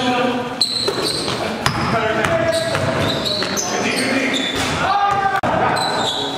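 A basketball being dribbled on a gym floor, with players' voices and shouts echoing around the hall.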